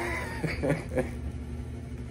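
A man's strained vocal sounds of effort as he twists a tight screw cap on a glass bottle by hand: a falling whine at the start, then a few short grunts.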